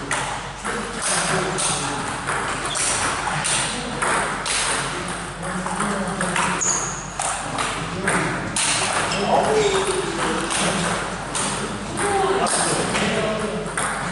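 Table tennis rally: a celluloid-type ball clicking repeatedly off paddles and the table in quick succession. Voices are heard in the background.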